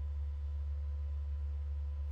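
A steady low hum, with faint steady higher tones above it and nothing else.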